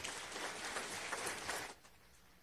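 Audience applauding, a dense patter of many hands clapping that dies away shortly before the end.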